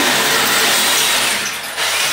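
Handheld power drill boring holes into a wall, a steady high whir under load.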